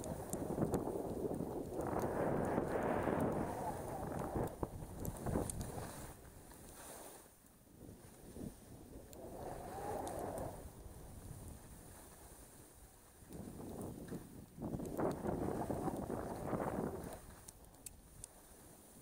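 Wind rushing over a helmet camera's microphone, mixed with skis hissing over snow on a downhill run. It swells and fades in three long waves.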